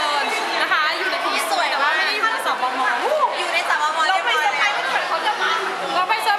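Overlapping chatter of several young women's voices talking at once, with no single voice clear.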